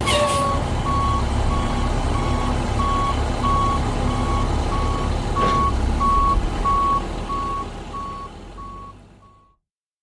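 Heavy truck's engine running while its reversing alarm beeps steadily, about one and a half beeps a second, with a short hiss at the start. The sound fades out over the last few seconds.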